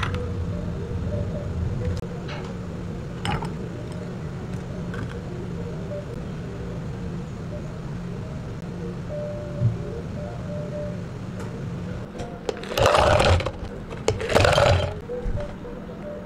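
Milk poured over ice into a tall glass, a low rushing pour that stops about two seconds in. Light clinks and clicks of glassware follow. Near the end come two loud bursts of rushing noise, about a second each.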